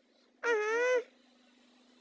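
A child's voice making one drawn-out, wavering vocal sound of about half a second, a little before the middle, followed by a faint steady hum.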